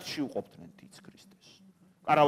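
A man's voice lecturing ends about half a second in, followed by a pause of faint room tone with a low steady hum.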